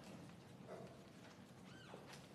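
Near silence: quiet church room tone, with one brief, faint, high squeak that rises and falls in pitch near the end.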